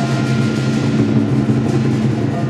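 Chinese lion dance percussion music of drum, cymbals and gong, with the gong and cymbals ringing on steadily.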